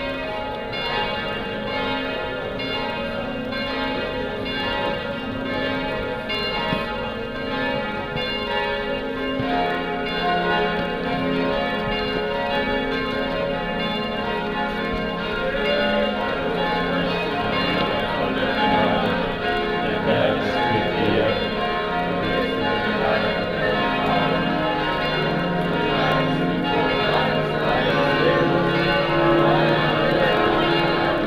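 Church bells of Echternach's basilica ringing a full peal, many bells sounding together without a break.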